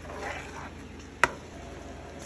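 A spoon stirring thick sweet rice and coconut milk in a pan: a soft wet scrape through the sticky mixture, then one sharp clink of the spoon against the pan about a second and a quarter in.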